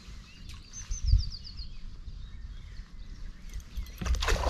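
A songbird sings one short phrase of about seven quick, falling high notes about a second in, over a steady low rumble with a dull bump at about the same moment.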